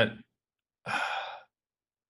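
A man's single audible breath into a close microphone, about half a second long, about a second in.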